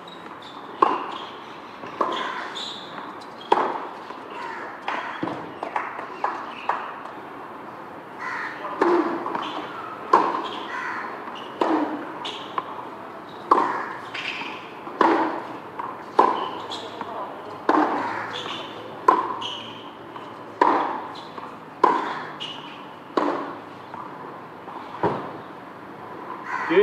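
Tennis ball struck back and forth by rackets on a hard court. Sharp pops come a few at a time at first, then about every second and a half through a long rally in the second half.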